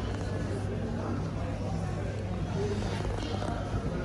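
Steady low machine hum with faint voices in the background.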